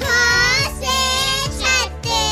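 A child singing a Hindi alphabet song in long, gliding notes over a children's music backing.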